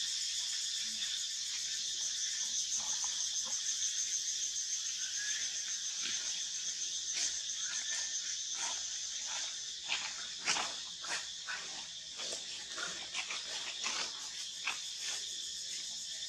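Steady high-pitched buzzing of forest insects, pulsing in the first half. About six seconds in, a run of short, sharp sounds starts and goes on to the end, loudest a little past the middle.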